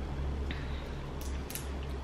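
A few faint, sharp clicks of sunflower seed shells being split and peeled with the fingers, over a low steady hum.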